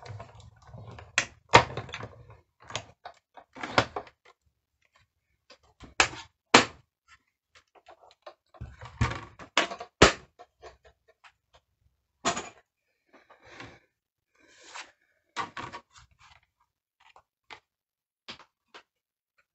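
Plates of a die-cutting machine being fed through its rollers with a low rumble for the first couple of seconds, then a series of sharp clacks and knocks as the cutting plates are set down and pulled apart, with light rustling of paper.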